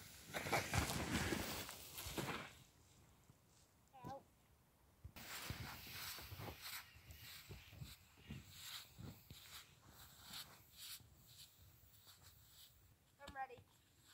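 Snow tube sliding down a snowy slope with a rushing hiss for the first two seconds or so. Footsteps then crunch irregularly through deep snow as the tube is towed back uphill. A short wavering vocal sound comes about four seconds in and again near the end.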